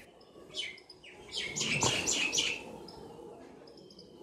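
Birds chirping faintly in the background: a short chirp about half a second in, then a quick run of high chirps, fading out after that.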